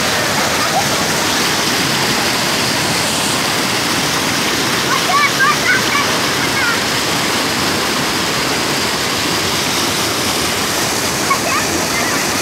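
Muddy floodwater rushing through a breach in an earth embankment and pouring into a pond: a loud, steady rush of churning water.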